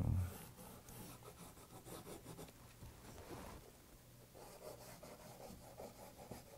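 Pencil scratching on Heat Bond paper as it traces around a paper template, a soft run of short strokes, with a brief louder thump right at the start.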